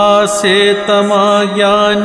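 Male voice singing a Kashmiri devotional verse (vaakh) in a slow, chant-like melodic line, over a steady drone that holds one pitch.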